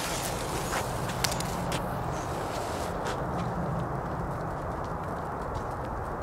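A few footsteps on an asphalt path in the first three seconds, over a steady outdoor background noise.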